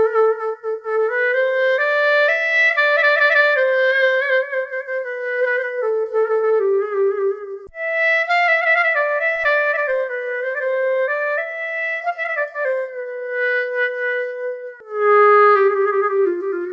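SWAM Clarinet virtual instrument played live from an Akai EWI breath controller: a solo clarinet melody of connected notes with a slight vibrato on held notes. It breaks off briefly about halfway through, then resumes and slides down in small pitch-bend steps near the end.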